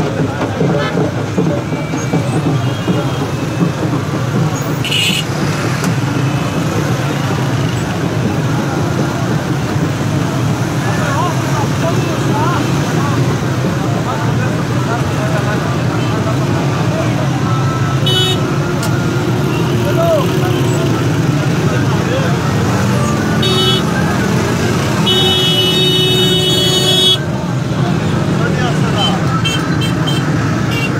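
Loud, steady din of a large marching crowd, many voices at once. Vehicle horns toot briefly now and then, with one longer high horn blast of about two seconds near the end.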